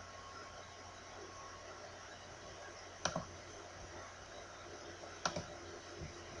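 Computer mouse clicked twice, about two seconds apart, each a sharp click with a fainter tick just after, over a steady low hiss.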